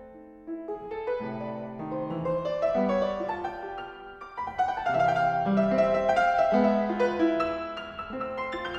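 Solo pianoforte playing variations on two folk airs. It starts quietly, swells, eases off about halfway, then comes back louder.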